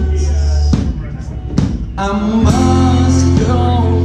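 A live rock band playing: acoustic guitar, electric bass guitar and drum kit. The band thins out about a second in, then comes back in full with held chords and a heavy bass line about halfway through.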